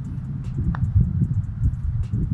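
Wind buffeting an outdoor microphone, a steady low rumble, with a faint tap about half a second in as a putter strikes a golf ball.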